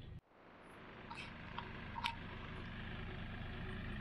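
Distant compact diesel tractor running steadily while pulling a 12-foot flexwing rotary cutter, heard as a faint low drone. The drone fades in after a short dropout about a quarter second in.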